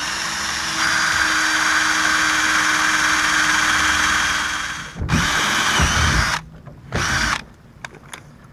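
Makita cordless drill boring a small pilot hole into the soft aluminium hub of a boat steering wheel: one long steady run of almost five seconds, then two shorter bursts.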